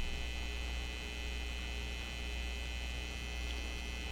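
Steady low electrical mains hum with a faint hiss, unchanging throughout.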